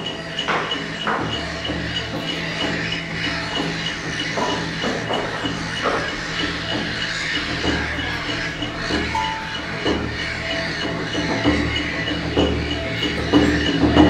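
Ambient experimental performance music, with a high tone pulsing about three times a second and scattered knocks and rustles woven through it.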